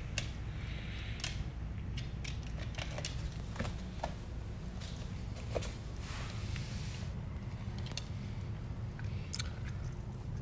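A dog eating dry kibble from a ceramic bowl: irregular crunching, with kibble clicking against the bowl.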